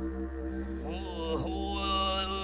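Treble children's choir singing a chant-like drone of long held notes; about a second in, voices slide up and down in pitch, and higher held notes enter near the end.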